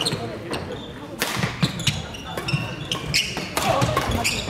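Badminton play in a large, echoing sports hall: sharp racket-on-shuttlecock hits from several courts, short squeaks of court shoes on the wooden floor, and background chatter of many voices.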